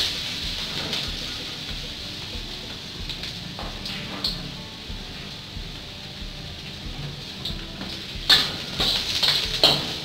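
Julienned ginger sizzling in sesame oil in a wok, with a spatula scraping across the pan now and then, the loudest strokes near the end.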